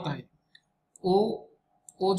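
A pause in a man's speech with one short spoken syllable about a second in, and a couple of faint computer mouse clicks as he works the on-screen document.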